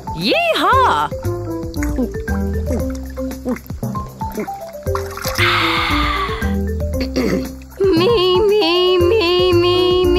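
Cartoon background music of short stepped notes under a cartoon dinosaur voice attempting a roar: a short sliding vocal cry at the start, a breathy rasp about halfway through, then a long wavering, strained pitched cry near the end, a roar that won't come out right.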